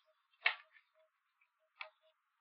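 Two faint, short clicks about a second and a half apart, over a faint background hiss.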